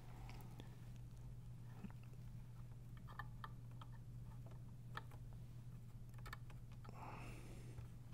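Faint, scattered small clicks and taps of fingers handling the plastic chassis and ribbon cable of an opened stereo, over a steady low hum.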